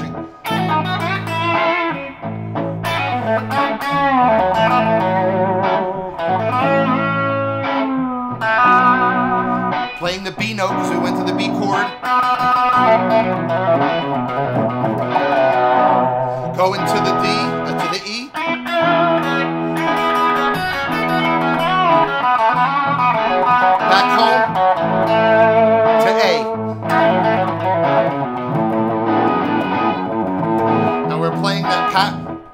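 Gibson semi-hollow-body electric guitar playing a lead solo with string bends in the F-sharp minor pentatonic scale, over a backing track of bass and chords cycling A, B minor, E7 and back to A. The solo stresses the root note of each chord as it goes by.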